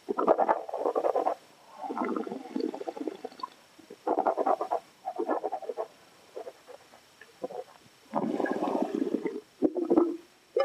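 Red wine being slurped and worked around in the mouth, air drawn through it in about five bursts of a second or so with short pauses between, the last and longest near the end.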